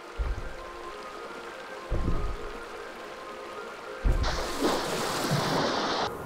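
Music with sustained tones and deep bass hits about two seconds apart, joined in the last two seconds by a loud rushing noise.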